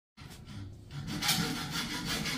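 Hacksaw cutting through a metal fence rail by hand: rapid back-and-forth scraping strokes, fainter at first and louder from about one second in.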